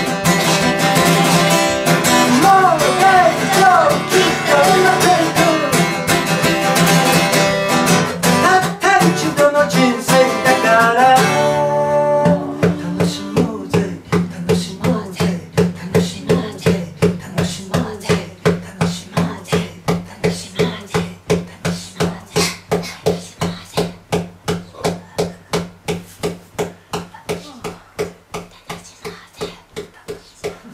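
A man singing in Japanese to his own acoustic guitar. About a third of the way in the singing stops and the guitar carries on alone, strummed in a steady even rhythm that gradually fades away as the song ends.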